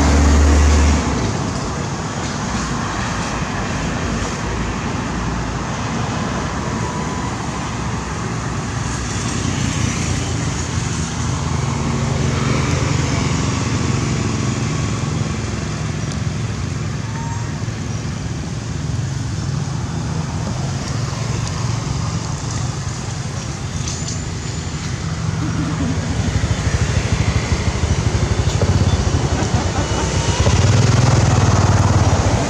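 Steady road traffic noise from passing vehicles, growing louder over the last few seconds.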